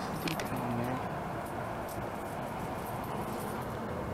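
Steady city street background noise, with a brief light metallic jingle near the start.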